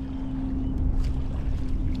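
Wind rumbling on the microphone, with a steady low hum underneath.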